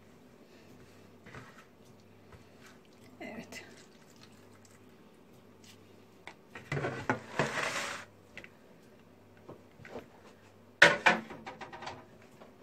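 Kitchen handling noises from a tray and a bowl of squeezed grated potato. There is a rustling, scraping burst of about a second and a half midway, then a sharp clatter near the end, the loudest sound, as a dish is set down or knocked.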